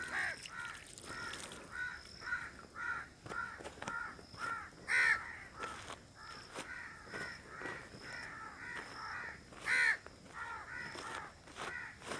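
Crows cawing over and over, about two short calls a second, with two louder caws about five and ten seconds in.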